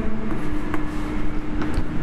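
Steady low rumble with a held hum that stops shortly before the end, and a few light taps of chalk writing on a blackboard.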